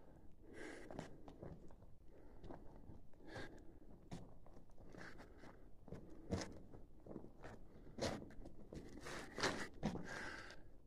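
Footsteps crunching and scraping on the loose rock and rubble of a mine floor, uneven in pace, with a few heavier steps in the second half.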